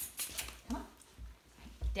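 Bernese mountain dog puppy giving a brief whine, with a few light clicks just after the start.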